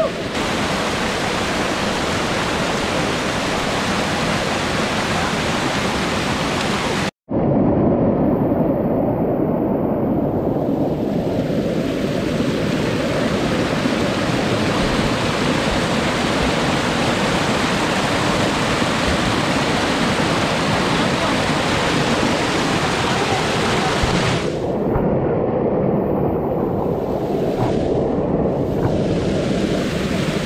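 White water of a small waterfall rushing steadily over boulders, a loud, even noise. The sound cuts out for a split second about seven seconds in.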